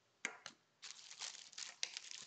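Two light taps of small eyepieces being set down on a table, then a plastic zip-top bag crinkling steadily as a hand rummages inside it.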